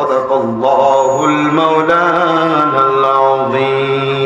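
A man's melodic Quran recitation (tilawat) through microphones, in long drawn-out notes that step up and down in pitch a few times.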